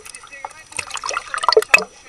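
Sea water sloshing and splashing irregularly against a waterproof camera housing bobbing at the surface, in a quick run of sharp bursts.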